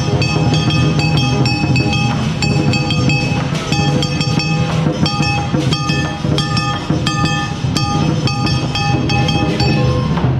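Lion dance percussion: a large drum beating steadily with clashing cymbals and gongs that ring on between the strokes.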